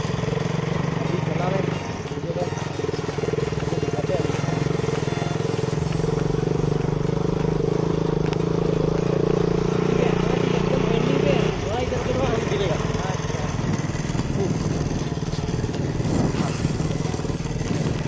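KTM RC sports bike's single-cylinder engine running under way on a rough dirt road. The engine note is steady at first and firms up a few seconds in, then drops off abruptly a little past halfway as the throttle eases, over wind and road rumble.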